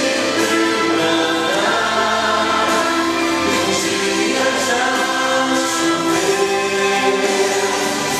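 A young man singing a Portuguese-language gospel song into a microphone, holding long notes over musical accompaniment.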